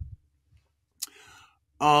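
A pause in a man's speech: a single sharp mouth click about a second in, then a faint breath, and his 'uh' begins near the end.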